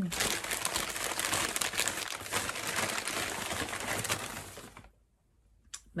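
Crinkly packing material being handled while an item is fetched: a dense, continuous rustle that stops about five seconds in.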